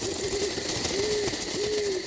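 Owl hooting, a few soft rounded hoots, over a steady hiss of night-time ambience, with a quick run of high chirps in the first second.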